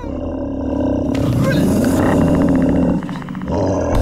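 A loud, drawn-out roar that breaks off briefly about three seconds in, then starts again.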